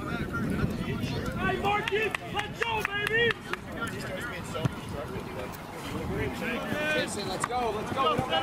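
Men shouting indistinct calls across a rugby field, in two bursts: one about two to three seconds in, and another near the end.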